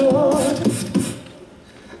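Male voices singing a cappella through stage microphones: a held, wavering final note over lower harmony that fades out about a second in, leaving only faint room sound.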